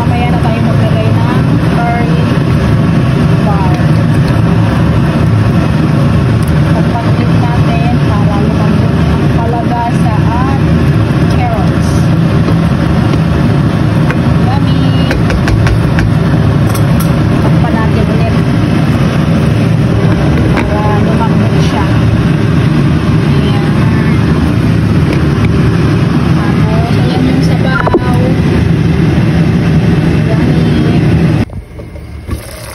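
Loud, steady low mechanical rumble, with faint voices underneath.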